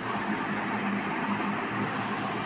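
Steady background noise with a faint low hum and no clear events: room ambience.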